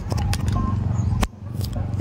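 Handling noise of a phone as a USB-C wireless microphone receiver is pushed into its charging port: a low rumble from fingers on the phone's body, with several sharp clicks.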